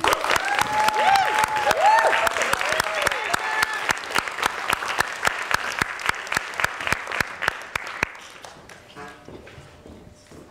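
Audience applauding, with a few whooping voices in the first three seconds; the clapping thins out and fades away about eight seconds in.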